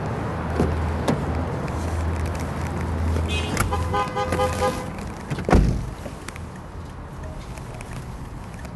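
Car engine idling with a steady low hum. A horn-like toot sounds for about a second midway, then comes a loud thump, after which the engine hum stops.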